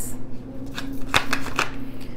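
A deck of tarot cards being shuffled by hand: a short run of crisp card snaps, bunched about a second in.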